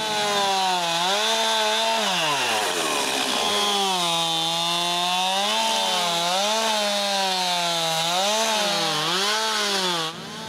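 Gas chainsaw ripping lengthwise through a birch log to square it, the engine running hard under cutting load. Its pitch sags deeply about two seconds in and recovers, then dips briefly several more times as the chain bites.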